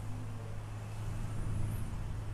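Steady low hum with a faint hiss: the room tone picked up through a clip-on microphone before any speech.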